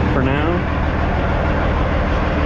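Diesel engine of a Kenworth semi truck idling with a steady low rumble.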